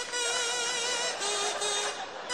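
A buzzy, reedy wind tone playing a slow tune: one held note, then a step down to a lower note a little past a second in.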